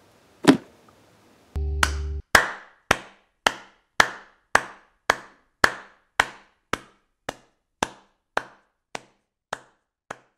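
An edited-in outro sound effect: a single knock, a short low buzz that cuts off, then an even run of sharp knocks, a little under two a second, growing fainter toward the end.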